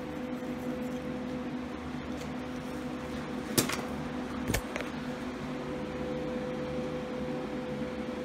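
A steady electrical or fan hum in a workshop. Two short sharp clicks come about three and a half and four and a half seconds in.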